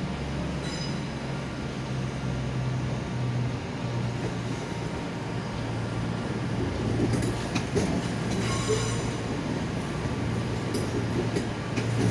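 London Northwestern Railway Class 350 Desiro electric multiple unit pulling into the platform close by, with a steady low hum. Brief high-pitched squeals come about a second in and again around eight to nine seconds in, and a few sharp clicks near the end.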